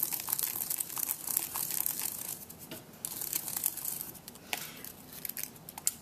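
A ball-tipped stylus rubbing and pressing a cardstock flower petal against craft foam to cup it, a dense scratchy crinkling of paper. It is busiest in the first two seconds, then thins to scattered small crackles and clicks.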